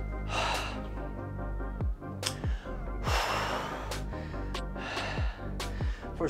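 A man breathing hard through three heavy, gasping exhales, one near the start, one in the middle and one near the end: he is out of breath from exercise and recovering during a rest break. Background music with a steady bass-drum beat runs underneath.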